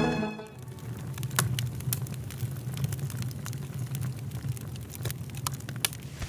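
Background music ends about half a second in, followed by quiet room ambience: a steady low hum with scattered light clicks and taps.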